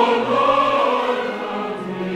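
Choral intro music: a choir singing long, held notes.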